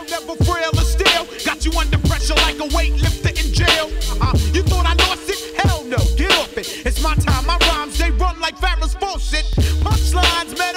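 Hip hop track: a rapper's verse over a beat with a heavy, pulsing bass line and held sustained tones.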